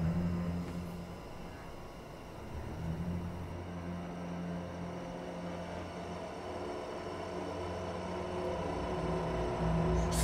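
A low, dark sustained drone on a film score, dropping back after about a second and swelling in again a couple of seconds later.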